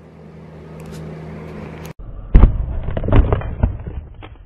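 A low steady hum, then a sudden cut about two seconds in, followed by a run of loud crunching cracks as a brick crushes a gingerbread house of baked gingerbread, icing and hard candy.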